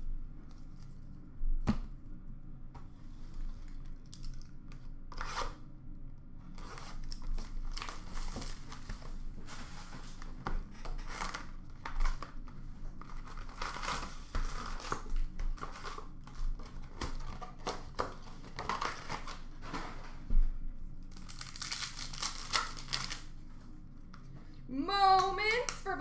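Plastic hockey card pack wrappers being torn open and crinkled by hand, in repeated bursts of rustling, with a sharp click about two seconds in.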